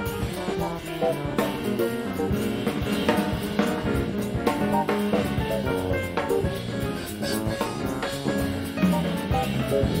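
Live jazz combo playing: piano lines over drum kit and electric bass.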